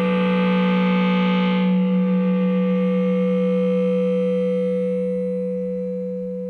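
Electric guitar sustained by an EBow, two of its strings coupled by a ring preparation that detunes their overtones: a steady, gong-like drone of two strong low tones with many overtones above. The bright upper overtones fade out about two seconds in, leaving the low drone.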